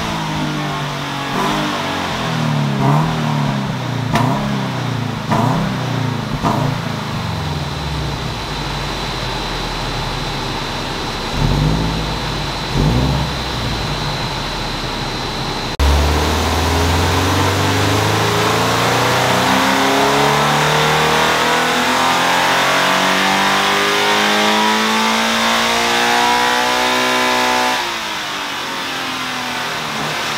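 Toyota GT86's FA20 flat-four, fitted with an unequal-length header, running on a hub dyno. For the first half the revs rise and fall in a series of short revs. About sixteen seconds in, one long pull climbs steadily in pitch for about twelve seconds, then the revs fall away near the end.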